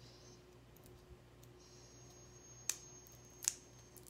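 A few light, sharp clicks from handling a small cosmetic pot of loose pigment while its inner seal is worked off, two louder ones near the end, over a faint steady room hum.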